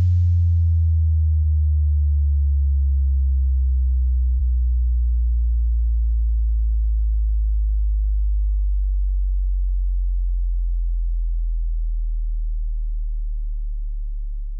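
Deep electronic sub-bass tone left sounding at the end of a slow-bass DJ remix, gliding slowly down in pitch and fading gradually.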